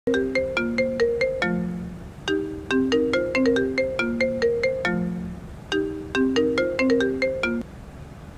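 Mobile phone ringtone: a short melody of quick, bell-like notes played over and over, stopping near the end as the phone rings out to be answered.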